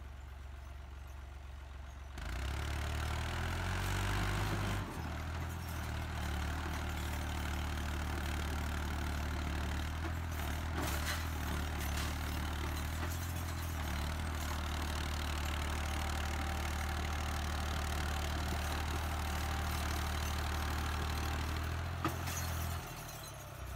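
Farm tractor's diesel engine running under load as the tractor crawls over rocky ground. It opens up about two seconds in, then holds a steady low drone.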